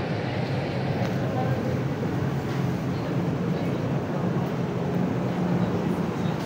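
Indoor market hall ambience: a steady murmur of background voices over a constant low hum.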